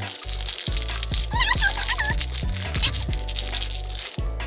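Foil blind-bag packet crinkling and crunching as hands twist and pull at it, trying to tear it open without a tear notch, over background music.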